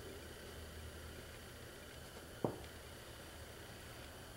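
Quiet workshop room tone with a low steady hum, and one soft, short knock about two and a half seconds in as small engine parts, connecting rod bearing shells and cap, are handled on the towel-covered bench.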